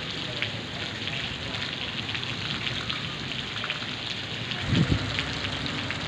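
Steady rain falling and pattering, a dense haze of small drop ticks. A brief low thump a little before five seconds in stands out as the loudest moment.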